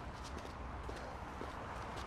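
A film soundtrack's night street ambience: a steady low rumble and hiss, with a few faint, irregular knocks like footsteps on a snowy pavement.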